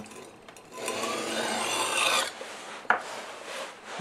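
Kitchen knife blade pushed across a whetstone at a 15-degree angle, its 3D-printed plastic guide sliding on the stone: a rasping stroke starts about a second in and rises over a second and a half. About three seconds in there is a sharp click, followed by a softer scrape.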